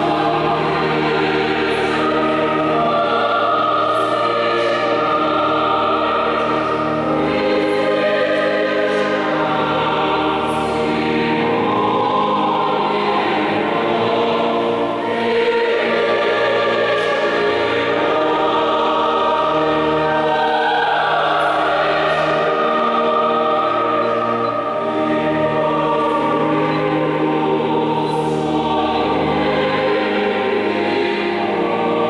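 Church choir singing unaccompanied in slow, sustained chords, with a low bass line under the upper voices and sung consonants hissing through. The sound carries in a large church.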